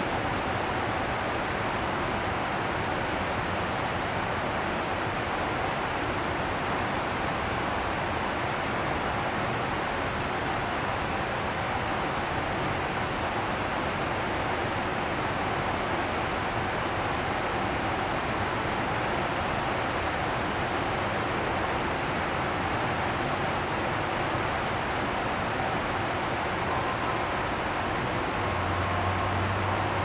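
Steady rushing air noise with a faint hum, typical of the blower fans that keep an air-supported sports dome inflated, running unchanged throughout.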